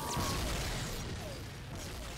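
Cartoon battle sound effects: a dense crackling rush of electricity with a string of short falling zaps like laser shots, loudest at the start and slowly dying away.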